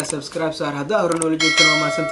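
Subscribe-button animation sound effect: a quick click, then a bright bell ding about two-thirds of the way in that rings on steadily.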